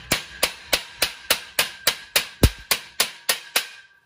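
Claw hammer striking the sides of a metal connector plate on a metal-tube frame in quick, even blows, about three and a half a second, bending the plate's edges in. The frame rings with a steady tone under the blows, and one blow about halfway through lands harder and deeper. The blows stop shortly before the end.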